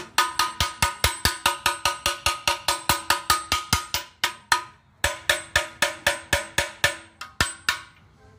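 A Hero Splendor motorcycle silencer knocked rapidly against a concrete floor, about five sharp strikes a second, each leaving the steel body ringing. The knocking shakes loose carbon soot that has built up inside the silencer. It pauses briefly a little past halfway, then carries on.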